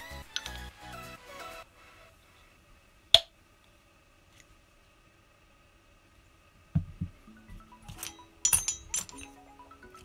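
Background music that stops after about a second and a half, then small metal clicks and clinks from the parts of a model nitro engine being fitted together by hand: one sharp click about three seconds in, and a run of clicks and knocks near the end.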